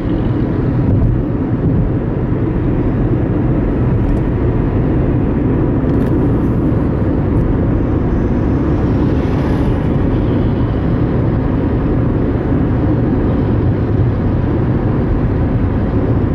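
Steady road and engine noise inside a moving car's cabin: a constant low rumble of tyres and engine at cruising speed on an open highway.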